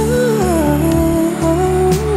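Male singer singing live into a handheld microphone, holding a long wordless line that glides slowly down in pitch and starts to climb again near the end, over instrumental accompaniment with steady low bass notes.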